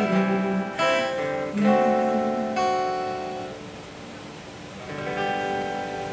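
Acoustic guitar playing the closing chords of a song: several strummed chords in the first few seconds, a chord left ringing and fading away, then one more chord about five seconds in.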